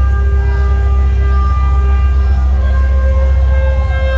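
Live band playing long held chords over a steady deep bass, with swooping tones that rise and fall above them in the second half.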